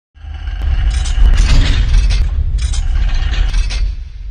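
Logo-intro sound effect: a deep, steady bass rumble starting abruptly just after the beginning, with a series of sharp mechanical clicks and knocks over it, easing slightly near the end.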